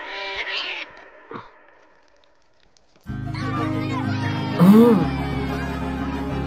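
Film soundtrack: a cat's short meow, fading to near quiet. Then music starts suddenly about three seconds in, with a steady low drone and a loud pitched swoop that rises and falls near the five-second mark.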